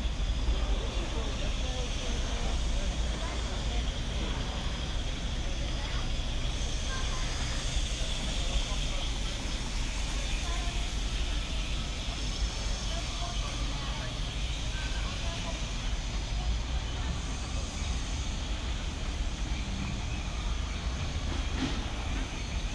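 Outdoor walkway ambience: indistinct chatter of people walking along, over a steady low rumble.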